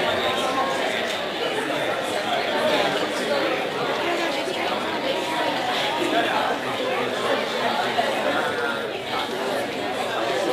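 Many people talking at once in a large hall, a steady babble of overlapping voices with no single voice standing out.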